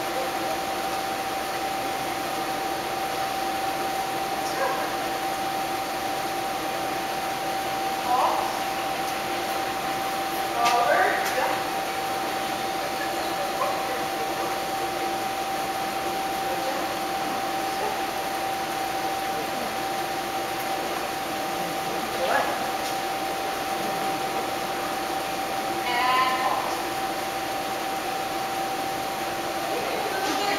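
A steady high-pitched hum runs throughout, with about four short vocal calls scattered among it.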